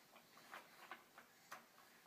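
Near silence: quiet room tone with a few faint, short ticks.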